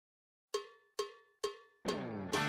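A pause in the background music, then three short ringing percussion strikes about half a second apart that count in a song. Its guitar comes in near the end.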